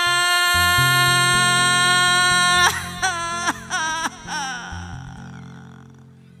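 A sapucai, the chamamé shout: one long, loud, high held cry that swoops up into its note, then breaks about three seconds in into several short falling yelps that fade away, over the band's low bass notes.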